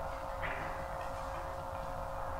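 Background room noise in a pause between speech: a low rumble under one steady faint hum, with a brief soft sound about half a second in.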